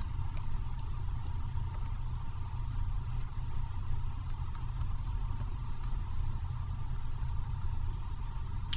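Steady low electrical hum of the recording setup, with about eight faint light clicks spread through it: keyboard keys tapped to step frame by frame through an animation.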